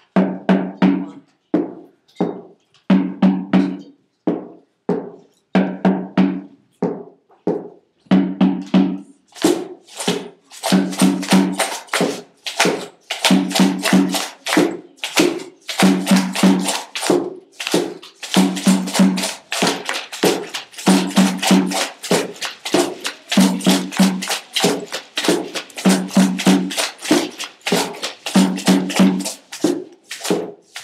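A group of children playing hand percussion in a steady rhythm: a low, pitched knock repeating in short groups, with sparse strokes at first and, from about nine seconds in, denser, brighter strokes filling in the beat.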